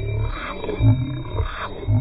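A man's voice making low, wordless growling noises, with a pitch that wavers up and down in several short stretches.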